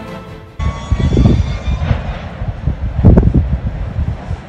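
Deep roar and rumble of volcanic lava fountains jetting from an erupting fissure vent, surging loudest about a second in and again about three seconds in. Background music fades out just before it starts.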